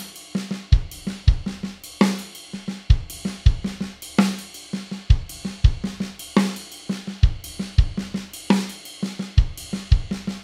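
Tama Star Bubinga drum kit with Sabian cymbals playing a slow linear triplet groove with a half-time shuffle feel: hi-hat, snare and bass drum strokes, one at a time, in a pattern that repeats about every two seconds, with one loud stroke in each repeat.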